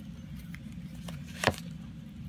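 Tarot card handling: a card drawn from the deck and laid down, with one sharp click about halfway through and a fainter tick before it, over a low steady room hum.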